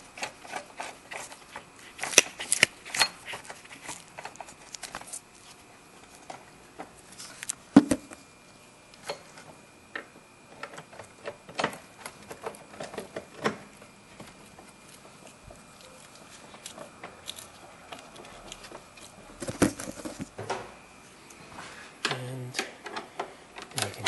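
Irregular metallic clicks and small knocks as the battery hold-down bolt is screwed back in and tools are handled in the engine bay, with a sharper knock about eight seconds in and a quick run of clicks near the end.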